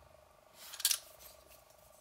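Two closed folding pocket knives with G10 handle scales scraping against each other as they are handled and turned together: one short, high scrape just before a second in, over a faint steady hum.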